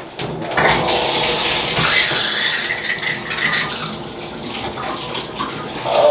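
Bathtub tap turned on about half a second in, water then running steadily into the tub.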